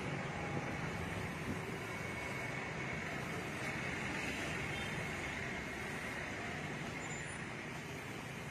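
Steady road traffic noise, an even wash of vehicle sound with no distinct events standing out.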